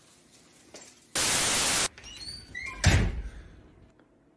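A steady hiss like static that starts and stops abruptly and lasts under a second, then faint squeaks and a heavy thud about three seconds in.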